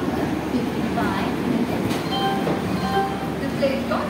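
Steady railway platform noise beside a standing passenger train: an even hum and hiss with distant voices.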